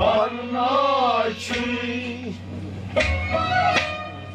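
A man singing a Kashmiri Sufiyana song in long, wavering notes over instrumental accompaniment. The voice stops a little past two seconds in, and steady held notes from the accompaniment carry on after it.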